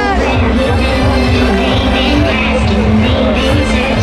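Live music played loud through an outdoor festival stage's sound system, heard from within the crowd, with a heavy, booming bass beat pulsing evenly.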